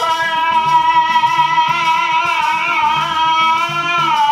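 Amplified male voice singing a Maulid devotional song, holding one long note with a slight waver over a repeating low rhythmic accompaniment.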